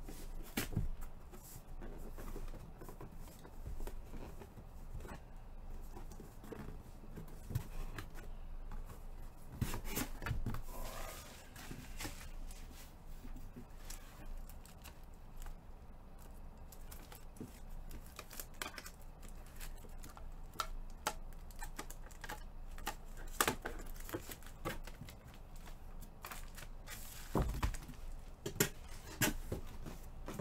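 A cardboard case box being opened and handled by hand: tearing and rustling of cardboard, with scattered light clicks and knocks as the plastic graded card slabs inside are taken out and stacked.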